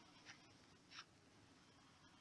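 Near silence: faint room tone with two very faint, brief scratchy noises, one just after the start and one about a second in.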